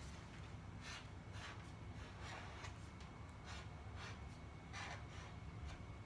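Felt-tip marker writing letters on a sheet of paper: a series of short, faint scratchy strokes, one for each pen stroke, over a low room hum.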